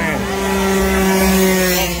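Small 48cc racing scooter engine held at high revs, a steady buzzing note at one pitch.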